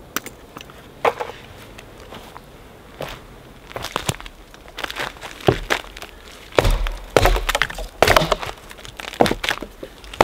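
Hatchet chopping dry dead branches off a fallen conifer: sharp wooden cracks and knocks that come thick and fast in the second half, after a couple of single snaps near the start.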